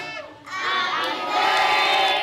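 A large group of children singing loudly together in unison, with long held notes and a short break about half a second in.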